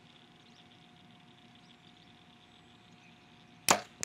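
A compound bow shot once near the end: a single sharp crack of the string and arrow on release, after a few seconds of near-quiet at full draw.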